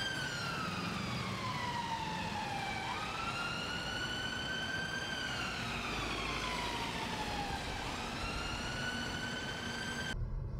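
Emergency vehicle siren wailing in city traffic: a tone that slides slowly down in pitch, jumps quickly back up and holds, then slides down again and jumps up once more, over a low traffic rumble.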